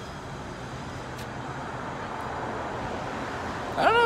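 Steady street traffic noise, growing slightly louder toward the end of the stretch.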